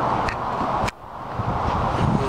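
Wind blowing across the camera microphone as a steady noise, with two sharp clicks; the noise cuts out suddenly about a second in, then builds back up.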